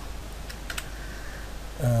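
A few faint, light clicks at the computer, as the lecture slide is advanced, over a steady low hum; a man's brief 'aah' starts near the end.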